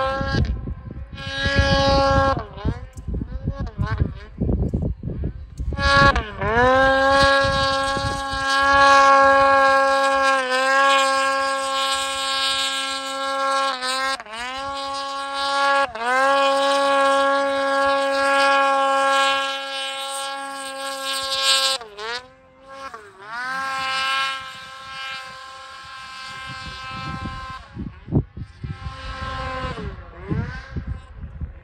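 Snowmobile engine revving hard while the sled ploughs through deep powder. It holds a high, steady pitch for long stretches, and the pitch dips briefly several times and climbs back up as the throttle eases and opens again.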